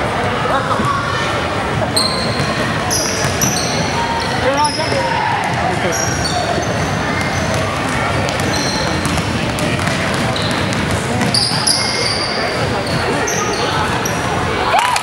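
Basketball being played on an indoor hardwood court: many short, high sneaker squeaks on the floor through most of the stretch, over a bouncing ball and indistinct voices echoing in the gym.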